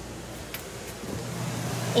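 A low, steady machine hum that grows louder about a second in, with a faint click about half a second in.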